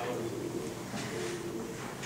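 Faint voices murmuring away from the microphone, low and indistinct, as one speaker hands over to the next.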